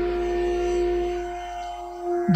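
A single held musical note from an accompanying instrument: a steady drone at one pitch that fades away through the second half.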